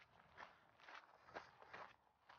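Faint footsteps of someone walking at an easy pace, about two steps a second.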